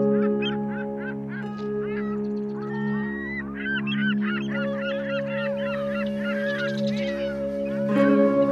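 Slow background music of steady held notes, with a flock of birds calling over it: many short rising-and-falling calls, thickest through the middle and thinning near the end.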